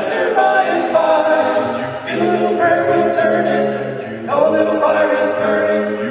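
Men's vocal quartet singing a gospel hymn in four-part harmony, with a low bass line under held chords. New phrases come in about 2 and 4 seconds in.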